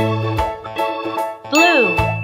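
Cheerful children's background music. About one and a half seconds in, a loud cartoon-style sound effect sweeps up and back down in pitch, with a bright ding ringing over it.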